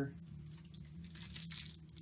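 Faint rustling and crinkling of a small item being handled and lifted out of a cardboard box, with light scattered clicks over a low steady hum.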